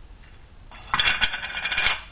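Aluminum cook pot's lid and wire handle being handled with a gloved hand: a dense metallic clatter and scrape with sharp clinks, starting under a second in.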